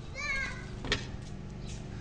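A child's high voice calls out briefly at the start, its pitch falling, followed by a single sharp click just under a second in, over a steady low hum.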